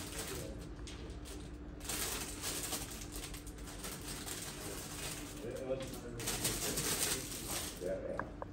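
Tap water running into a kitchen sink in three long spells with short breaks between, over a steady low hum.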